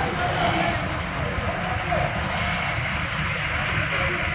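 Road traffic ambience: a steady noise of vehicles going by, with faint voices in the background.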